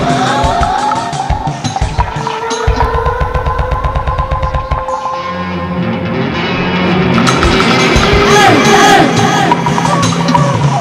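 Improvised experimental music from electric guitar and live electronics: gliding, sustained tones, a fast low stuttering pulse for about two seconds in the middle, then sliding pitches building louder near the end.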